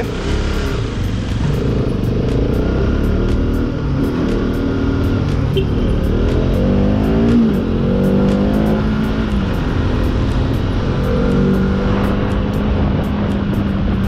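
Bajaj Pulsar RS 200's single-cylinder engine under way, heard from the rider's seat: its pitch climbs as it accelerates, drops once about seven seconds in, then holds steady, with wind rush on the microphone.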